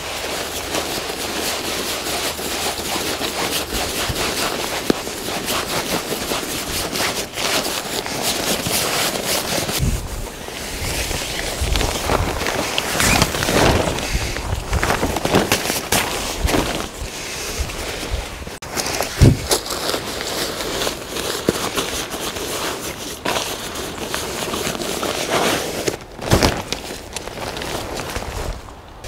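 Rustling and crinkling of a pop-up photography hide's camouflage fabric and groundsheet being handled and folded, with constant crackles and a few sharper clicks and knocks.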